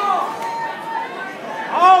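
Spectators' voices chattering and calling out to the wrestlers, with one loud shout near the end.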